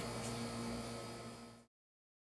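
Air conditioner buzzing steadily in the room, a low hum with a faint hiss. It fades away and cuts to silence about a second and a half in.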